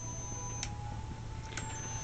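Homemade kacher oscillator and yoke-coil rig running: a steady electrical hum with thin high-pitched whines. A single click comes a little over half a second in, and after it one whine steps slightly lower in pitch.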